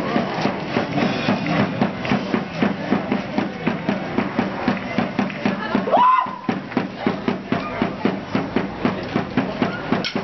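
Drum beating a steady, quick rhythm of about four strokes a second for a masked street dance, under the voices of the watching crowd. About six seconds in, a single high note rises and holds briefly.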